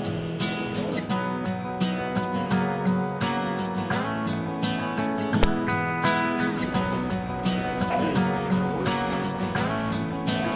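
Background music led by a strummed acoustic guitar, with a steady strumming rhythm.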